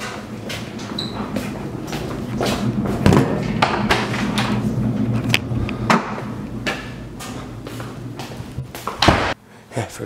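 Handling and movement noises: footsteps, knocks and a door being worked as a person carries a bag to a car, over a steady low hum, with a louder thump near the end as the car's trunk is reached.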